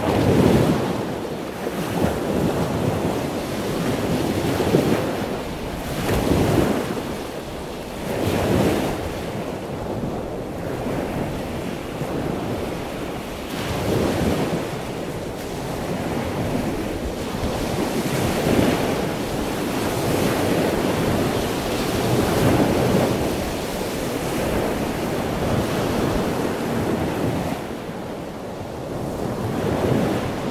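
Ocean surf breaking on a beach: a rushing wash of waves that swells and fades every few seconds, with wind-like noise between.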